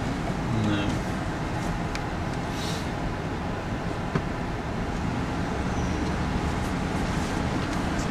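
Steady low rumble of a car's engine and tyres heard from inside the cabin while driving, with a single click about four seconds in.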